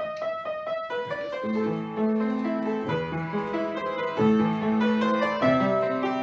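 Upright piano played by hand: quick repeated notes in the first second, then a flowing passage of held notes and chords.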